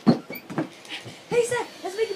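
Knocks and rubbing from the camera being handled, followed by a few short pitched vocal sounds.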